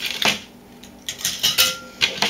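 Small pieces of scrap circuit board clinking as they drop into a glass bowl: one clink just after the start, then a quick cluster of clinks in the second half, the last one leaving a short ringing note.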